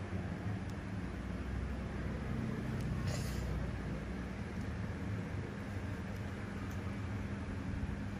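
Steady low mechanical hum with an even background hiss, like a room fan or air conditioner running, with a brief soft hiss about three seconds in.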